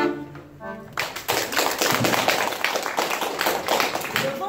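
The accordion's last chord fades away in the first second, then an audience applauds.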